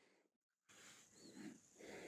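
Near silence: room tone, with two faint breaths, one about one and a half seconds in and one near the end.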